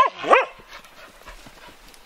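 Dog giving two short, high yips in the first half second, each rising and falling in pitch, as it jumps up at its owner in excitement; the owner takes its fuss for scolding him for having been left at home.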